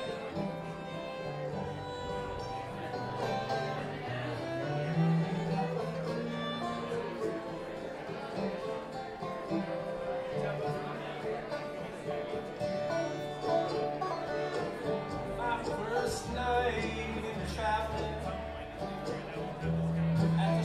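Live bluegrass band playing a song: banjo, fiddle, upright bass, acoustic guitar and mandolin together, with the upright bass notes growing stronger in the second half.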